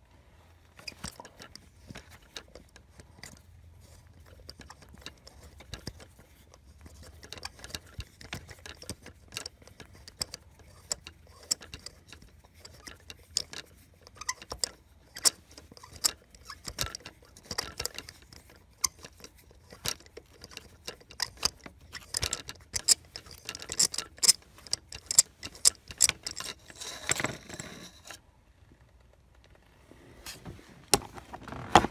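Ratchet on a spark plug socket and extension clicking irregularly while a spark plug is backed out of its well, with metal-on-metal taps and rattles; the clicks grow denser and louder toward the end.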